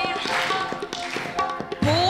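Audience clapping in scattered, irregular claps over the held notes of the backing music. Near the end a woman's singing voice comes back in, sliding up into a note.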